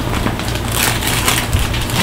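Crinkling and rustling of a shopping bag as someone rummages through it, getting busier about halfway through.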